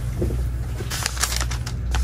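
A steady low hum, with a few short clicks and rustles about halfway through and again near the end.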